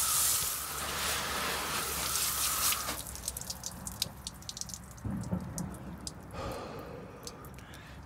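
Garden hose spray nozzle blasting water against a truck's tyre and wheel well: a steady hiss that stops about three seconds in. Water then drips and splatters off the wet tyre and suspension in quick irregular ticks.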